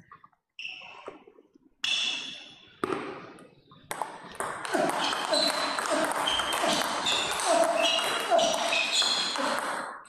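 Table tennis rally: the ball pinging off the paddles and bouncing on the table. The hits come a second or so apart at first, then follow in quick succession through the second half.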